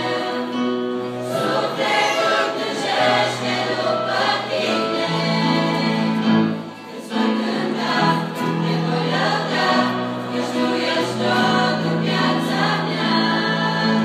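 Girls' choir singing a religious song together, with a brief pause between phrases about halfway through.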